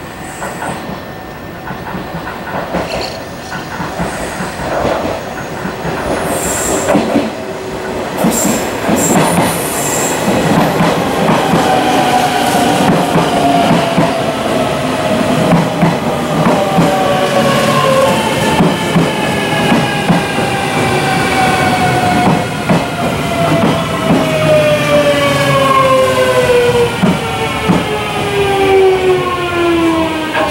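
Series 383 electric limited express train pulling into a station platform and braking. Wheels click over the rail joints and growing louder, and from about halfway through a whine falls steadily in pitch as the train slows.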